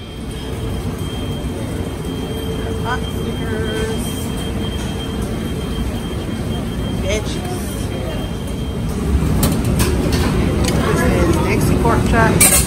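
Busy buffet-restaurant din: a steady wash of room noise and indistinct background voices, with a thin steady whine through the first half and a few sharp clicks near the end.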